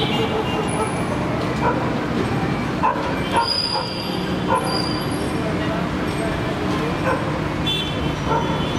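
City street traffic: motor vehicles and motorbikes running and passing steadily, mixed with people's voices in the background.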